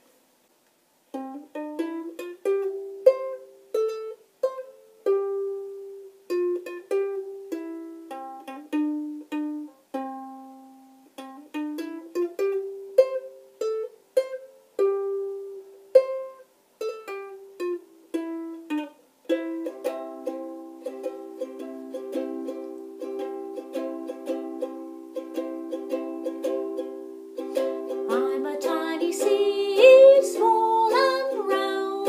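Ukulele played solo: the tune picked out one note at a time, each note ringing and dying away, then from about two-thirds in, chords strummed in a steady rhythm.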